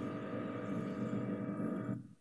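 A steady electrical hum made of several pitched tones over a low hiss, which cuts off suddenly at the end.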